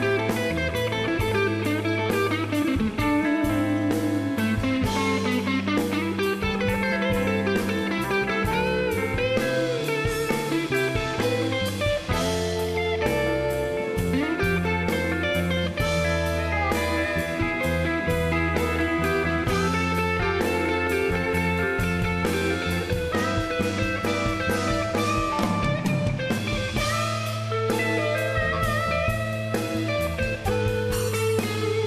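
Electric blues band playing live: amplified harmonica and electric guitars over bass and drums, the lead lines bending up and down in pitch.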